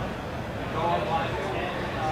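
Background chatter of a busy hall: faint voices over steady crowd noise, with a distant voice briefly clearer about a second in.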